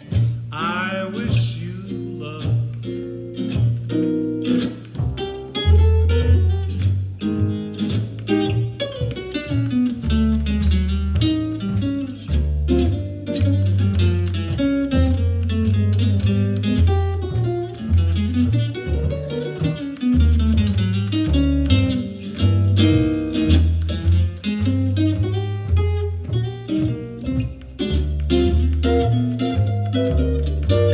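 Guitar and plucked upright double bass playing an instrumental passage of a slow jazz ballad: the guitar picks melody lines and chords over a steady line of deep bass notes.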